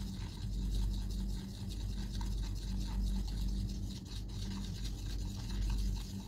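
Paintbrush stirring and scrubbing thick acrylic paint in a plastic palette well, a soft continuous brushing and scraping, over a steady low hum.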